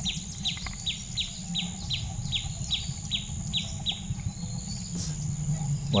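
A bird calling over and over in short falling chirps, about two and a half a second, stopping a little after four seconds in. Under it runs a steady low rumble from the moving electric wheelchair, and a single click comes near the end.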